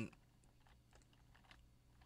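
Near silence with a few faint, scattered clicks from small plastic parts of a handheld radio's casing being pressed and handled.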